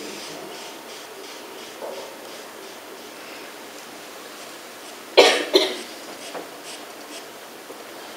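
A person coughing twice in quick succession about five seconds in, over the faint steady hiss of a large lecture hall.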